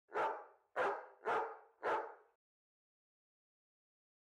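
A dog barking four times in quick succession, the barks about half a second apart and all within the first two and a half seconds.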